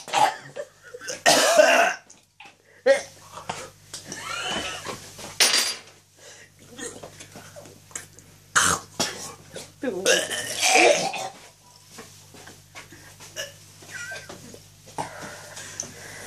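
A man gagging, coughing and belching in separate bouts with short pauses between, the loudest bout about ten seconds in: he is retching on foul food he has just forced down.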